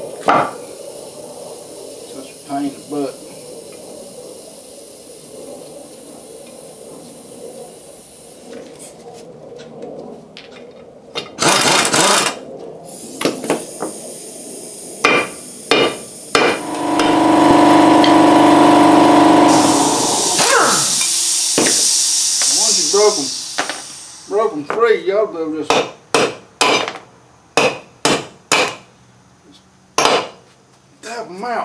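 A small sledgehammer strikes the wheel studs of a 1985 Chevy K10 front rotor hub to knock them out. It lands as a series of sharp metal blows that come in quick succession over the last few seconds. Midway, a power tool runs steadily for about three seconds.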